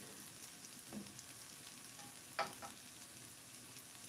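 Diced potatoes frying in a pan with a faint, steady sizzle, and a wooden spatula knocking against the pan, once faintly about a second in and more sharply about two and a half seconds in.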